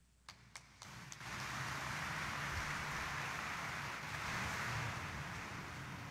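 A few faint clicks, then, about a second in, a steady hiss of background room noise that holds without change.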